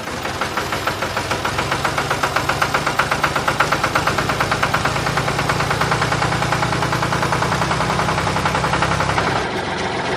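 Diesel tractor engine idling with a rapid, even chugging beat.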